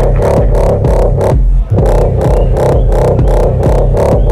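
Electronic dance music from a DJ set, a steady fast beat over deep bass and synth, with a short drop-out about one and a half seconds in before the beat comes back.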